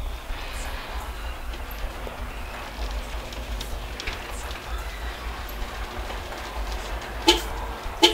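Sectional garage door rolling open, a low steady rumble, with a sharp knock near the end.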